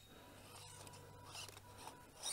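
Near silence: a faint steady hum and background hiss.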